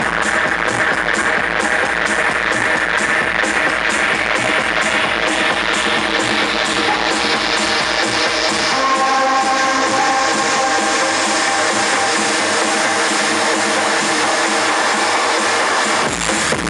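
Electronic dance music from a DJ set played on Pioneer CDJ decks, with a steady bass drum beat. About halfway through the beat and bass drop out for a breakdown of higher synth tones, and the beat comes back right at the end.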